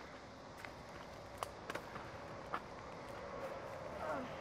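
Rustling and crunching over a dry, leaf-covered dirt track from a run on foot alongside a child's bicycle, with four sharp clicks scattered through it.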